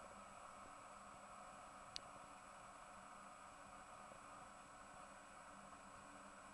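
Near silence: faint steady room hiss, with a single brief click about two seconds in.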